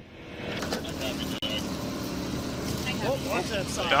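A steady background hum, with people's voices calling out near the end as responders move a stretcher.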